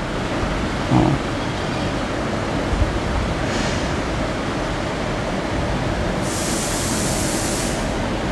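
Steady rushing background noise with no speech. A short low sound comes about a second in, and a high hiss rises for about a second and a half near the end.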